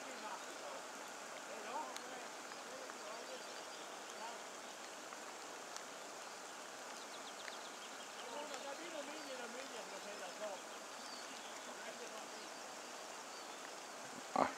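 River water rushing steadily. Faint, distant men's voices come across the water, clearest between about 8 and 10 seconds in.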